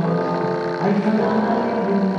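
A man singing solo into a microphone, with no instrument heard, in slow, long-held notes.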